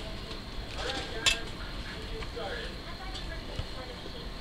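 Sheer wire-edged ribbon rustling and crinkling as it is pushed and gathered along its edge wire by hand. There is a single sharp tick about a second in.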